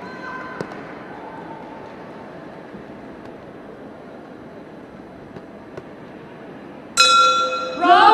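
Arena murmur with faint voices, then about seven seconds in a boxing ring bell rings out loud and sudden, signalling the start of the round; shouting starts up right after it.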